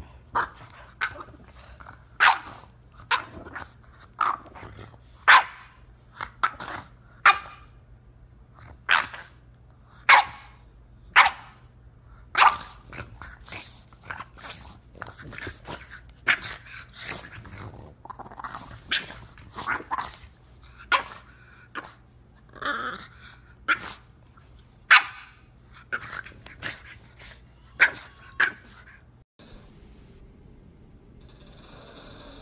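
French bulldog puppy barking over and over in short, sharp barks, roughly one a second.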